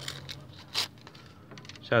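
Foil wrapper of a Panini sticker packet rustling as it is opened by hand, with one brief sharp crinkle a little under a second in.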